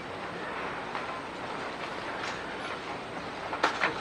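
Steady room noise with a few faint knocks and one sharper click near the end: a handheld microphone being picked up and handled.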